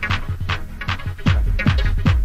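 Techno in a DJ mix: a fast four-on-the-floor beat at about two and a half kicks a second with bright hi-hats. The kick drum drops out for roughly the first second while the hats carry on, then comes back in.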